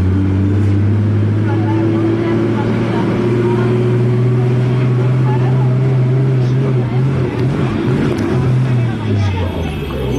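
Street traffic with a vehicle engine running steadily close by, a low hum that fades and breaks up about nine seconds in. Voices are faint underneath.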